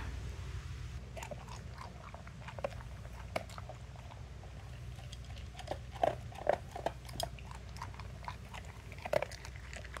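Large-breed puppy eating dry kibble from a bowl: irregular crunches and clicks of chewing, coming thicker about six seconds in and again near nine seconds.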